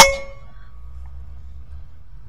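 A single shot from an unregulated Evanix Rainstorm SL .22 PCP air rifle: one sharp crack with a metallic ring that dies away within about half a second.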